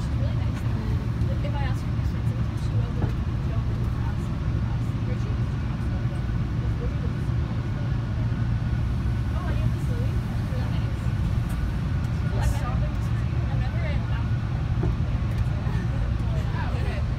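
Steady low rumble and hum of a TTC subway car heard from inside the car, with faint passenger voices over it.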